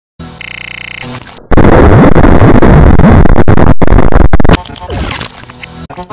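Deliberately distorted, clipped audio edit: a short buzzy tone, then about three seconds of extremely loud blown-out noise with wavering pitch glides that cuts off suddenly, followed by quieter jumbled sounds.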